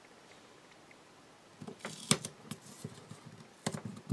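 Soft rustling and small clicks of adhesive-backed paper being handled and pressed onto a small wooden block. The sounds begin about a second and a half in, after a near-silent start.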